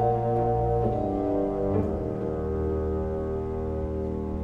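Orchestra playing a slow film-score passage of sustained chords. The harmony moves about a second in and again near two seconds, then holds and slowly softens.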